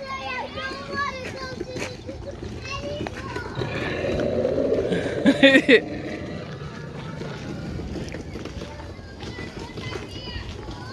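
Children's voices and chatter, with a louder, rougher stretch of sound from about three and a half to six seconds in.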